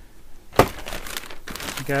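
Thin plastic shopping bag crinkling and rustling as a hand grabs it and opens it, starting suddenly with a loud rustle about half a second in.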